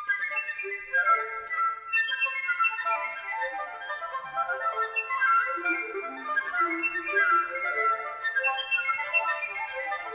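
Instrumental classical music: a busy stream of quick, high, overlapping notes.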